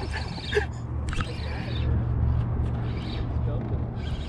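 Cloth rubbing and brushing against the camera microphone over a steady low rumble.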